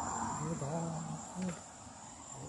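Steady high-pitched insect chorus, a single unbroken trill, with a man's low voice murmuring briefly in the first half.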